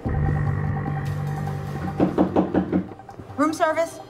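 Quick run of about six knocks on a hotel room door, lasting under a second, over a low steady drone of film score.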